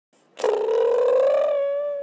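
Logo-intro sound effect: one long buzzy, fluttering tone that starts about half a second in, glides slowly upward in pitch and fades out near the end.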